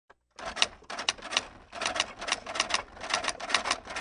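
Typewriter sound effect: quick, irregular runs of key strikes with brief pauses between them, timed to text being typed out letter by letter.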